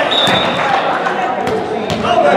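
A volleyball being struck by players' hands and forearms during a rally in an echoing gymnasium, a few sharp slaps, the clearest near the end, over a steady hubbub of players' voices.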